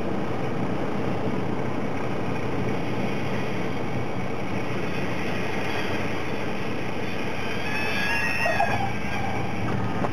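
Cessna 172SP's Lycoming four-cylinder engine idling, heard inside the cabin, during the landing rollout. There is a brief high squeal about eight seconds in.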